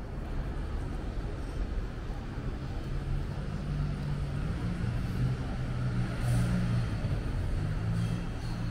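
City traffic rumble, with a motor vehicle's engine running close by and growing louder from about three seconds in.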